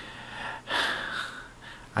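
A man's audible breath in a pause between sentences, one louder breath a little over half a second in that fades away.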